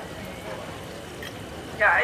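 Steady, even background ambience with no distinct events, with a woman's voice beginning near the end.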